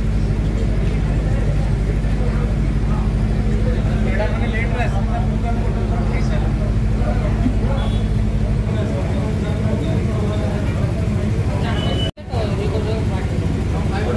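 A steady low engine hum runs under indistinct chatter. The hum's lowest tone changes about two-thirds of the way through, and the sound cuts out for an instant near the end.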